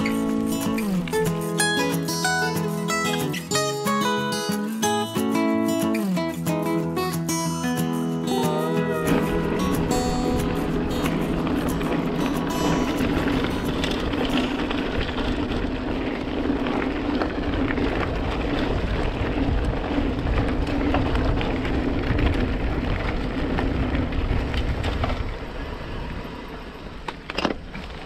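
Acoustic guitar music for roughly the first third. It then gives way to the steady noise of a mountain bike being ridden on a dirt track: tyres rolling on the ground and wind on the microphone, with a low hum underneath that eases off near the end.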